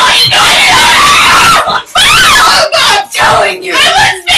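A mother and daughter screaming at each other in a furious argument, loud and almost without pause, with only short breaks.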